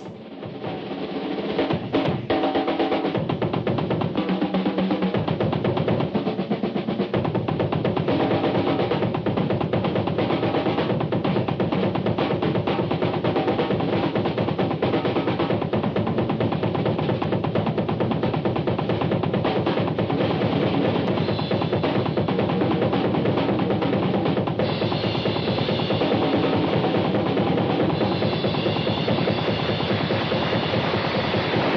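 Drum kit solo: fast, continuous rolls of strokes across the drums, fading in over the first two seconds. The sound gets brighter and more cymbal-heavy about three-quarters of the way through.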